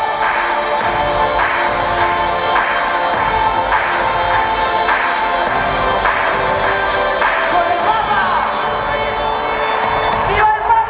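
Live rap music played over an arena sound system: a steady drum beat hitting roughly once a second under sustained synth tones, with a crowd audible beneath it.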